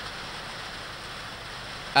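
Steady background hiss with no distinct events during a pause in speech; a voice begins right at the end.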